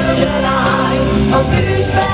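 Live song sung by two women and a man together in harmony over a musical accompaniment with steady bass notes, heard through the stage PA.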